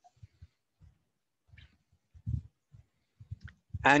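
A few faint, short low thumps and knocks, the most noticeable about halfway through, then a man starts speaking near the end.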